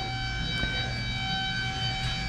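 Steady background hum with a constant high-pitched whine, several unchanging tones over a low rumble, like running machinery or electrical equipment.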